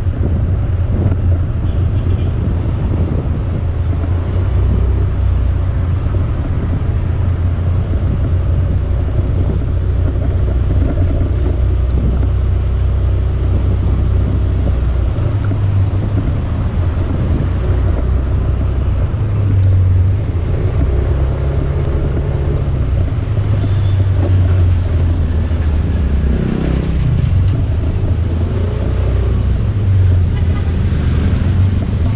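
Steady low rumble of wind on the microphone from riding along a city street, with motor traffic running alongside. Near the end a nearby vehicle engine revs up in pitch and falls away again.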